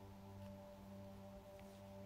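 Near silence, with faint background music underneath: a low, steady drone of several held tones.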